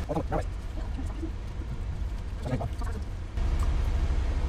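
Short appreciative "mm" sounds from people chewing food, twice, once near the start and once about two and a half seconds in. A steady low rumble in the car cabin runs under them.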